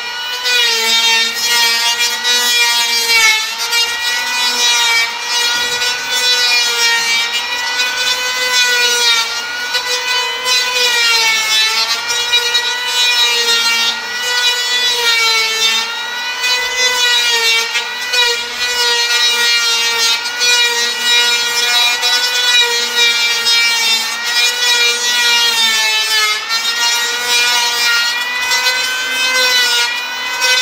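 Handheld electric power plane running continuously as it shaves wooden strip planking, a steady motor whine whose pitch dips briefly every few seconds as the cut loads it.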